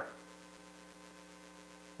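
Faint steady electrical mains hum, a low buzz made of several unchanging tones, in the sound system's recording chain.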